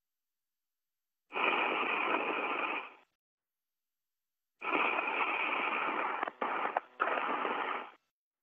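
A communications radio loop keying open twice, each time carrying a stretch of hiss and cabin noise without clear words, then cutting off abruptly. The sound is narrow and thin like a radio channel.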